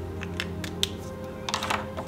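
Background music over a few light clicks and taps from a pen and notebook being handled, then a brief paper rustle near the end.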